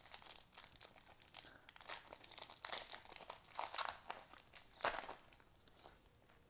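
Foil trading-card hobby pack being torn open by hand: a run of crackling tears and crinkles of the foil wrapper, with the sharpest rip near the end, then it stops about five seconds in.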